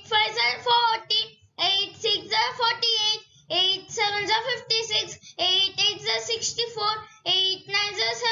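A child's voice chanting the eight times table in a sing-song rhythm, one multiplication fact per short phrase with brief pauses between.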